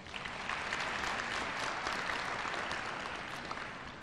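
Audience applauding steadily, a dense clapping that eases off slightly near the end.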